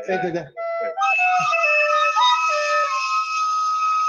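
Plastic recorder played: a few short notes, then one long high note held for about three seconds.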